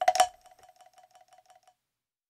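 Closing hit of a recorded song: two sharp percussion strikes, then a rattle of quick taps, about eight a second, over a ringing note, fading away and stopping near the end.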